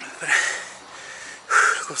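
A man breathing hard, two heavy gasping breaths about a second apart: he is out of breath after running uphill.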